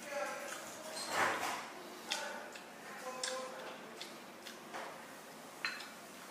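Chopsticks and a porcelain spoon clinking against porcelain bowls and dishes at a table: a few light clinks and pings, some with a short ring.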